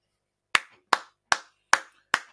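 One person clapping slowly: four single handclaps, evenly spaced at about two and a half a second, starting about half a second in.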